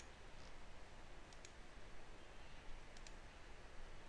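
A few faint computer mouse clicks, about two over a few seconds, over a low steady hiss.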